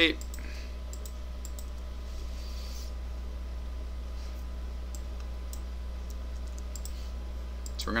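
Scattered light clicks of a computer mouse and keyboard keys as shapes are cut and deleted in a drawing program. A steady low electrical hum runs underneath.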